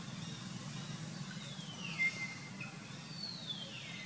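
Two high whistled calls, each gliding down in pitch and ending on a short held note, the first loudest at its end about halfway through, the second near the end, over a steady low hum.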